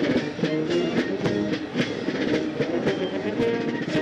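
Marine Corps marching band playing a march on brass and drums as it marches, with held brass chords over a steady drum beat.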